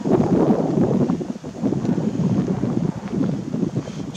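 Wind buffeting the camera's microphone: an uneven low rumble that rises and falls in gusts.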